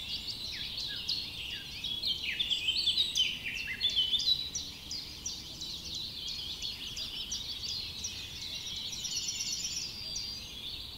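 Many small birds chirping together, a dense chorus of short, quick, downward-sliding chirps that overlap one another, busiest and loudest a few seconds in.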